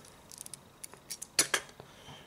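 Knurled aluminium scalpel handle being unscrewed in the fingers: a scatter of light metallic clicks and scrapes from the threaded collet parts, the loudest about one and a half seconds in.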